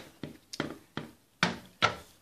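Small plastic toy figure tapped along the wooden floor of a toy dollhouse as it is walked: a run of short, sharp taps about two a second. A child sings a short "lá" near the end.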